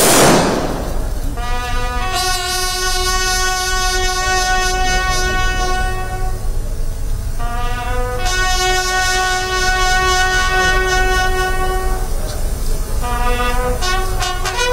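A ceremonial bugle call at a state-honours funeral: two long, steady held notes of about four seconds each with a short break between, then shorter notes near the end. It opens with a brief whoosh.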